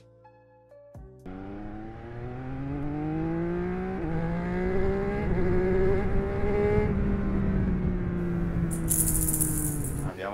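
Recording of a three-cylinder motorcycle engine under way, its note climbing gradually, stepping up about four seconds in, then easing off toward the end. A short run of stepped electronic tones opens the first second.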